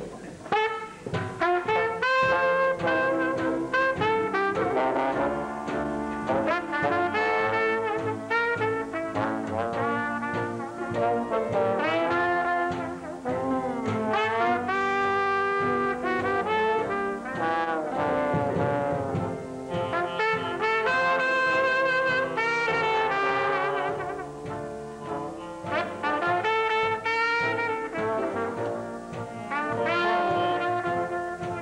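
Live traditional jazz band playing an instrumental passage, trombone and trumpet carrying the tune over drums and string bass, with sliding trombone notes; the music comes in just after the start.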